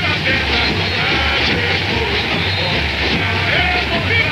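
Samba-enredo sung by a mass of voices over a samba school drum section (bateria), with crowd yelling.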